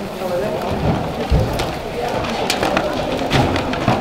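Hubbub of a roomful of people getting up and packing up: indistinct overlapping chatter, rustling of coats and bags, and scattered clicks and knocks, with a low thump about a second and a half in.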